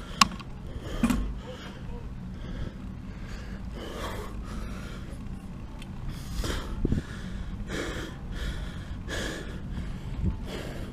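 A cyclist breathing hard from the effort of a steep climb, a heavy gasp roughly every second and a half, over a steady low rumble from the ride. A sharp click just after the start and a thump about a second in.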